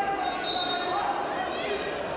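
Wrestling arena sound in a large echoing hall: voices call out from around the mat during a bout, with a brief high whistle-like tone near the start and a rising call in the second half.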